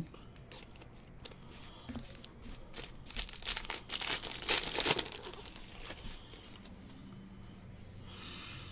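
A trading-card pack wrapper being torn open and crinkled: a few light plastic crackles, then a dense flurry of tearing and crinkling from about three to five seconds in, loudest just before it stops.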